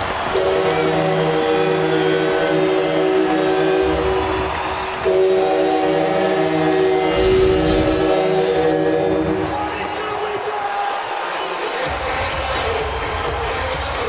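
Arena goal horn sounding after a home-team goal, in two long held blasts lasting about ten seconds, over a cheering crowd, with the crowd and arena music carrying on after the horn stops.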